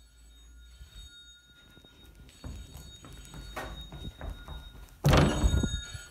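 Scattered knocks, then a loud thud about five seconds in, over faint steady high-pitched tones.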